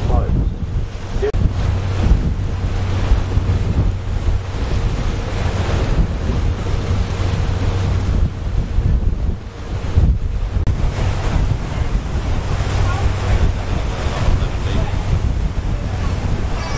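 Wind buffeting the microphone in gusts on the deck of a moving harbour tour boat, over the steady low hum of the boat's engine.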